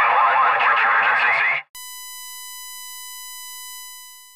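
A dense, noisy wash of sound cuts off about a second and a half in. A steady, buzzy electronic tone follows, holding one pitch for about two seconds and fading away near the end.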